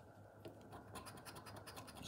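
A plastic poker-chip scratcher scratching off the coating of a scratchcard in short, quick, faint strokes. They start about half a second in and grow a little louder.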